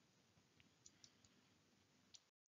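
Near silence: room tone, with two faint short clicks, one a little under a second in and one just after.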